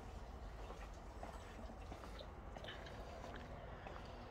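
Quiet outdoor background: a low steady rumble under a faint even hiss, with a few soft, faint taps.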